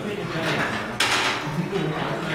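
Several people talking at once in a large room, with a sudden clatter about a second in.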